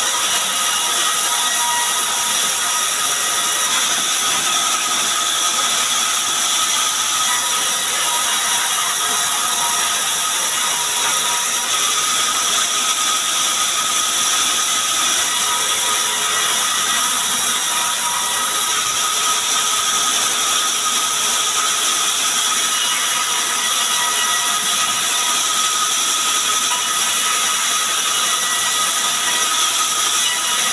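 Sawmill bandsaw running and cutting lengthwise through timber planks, a loud, steady high-pitched whine that never lets up.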